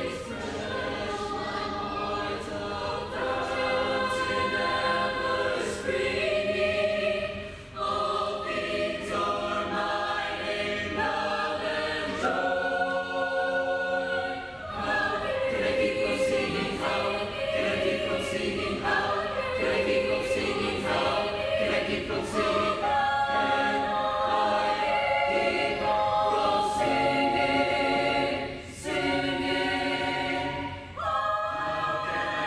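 Mixed choir singing unaccompanied in parts: held chords of many voices, with short breaks between phrases.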